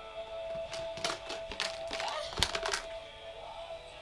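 A run of sharp plastic clicks and clacks as a baby handles plastic clothespins and a plastic basket, loudest about two and a half seconds in. Music with a steady held note plays underneath.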